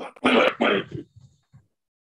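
A man clearing his throat, two short rough rasps in quick succession within the first second.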